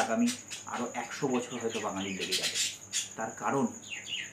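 A man talking, with a thin steady high-pitched tone running underneath.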